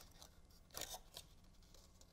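Near silence with faint, brief rustles of cardstock being handled and pressed between fingers as a glued paper tab is held in place.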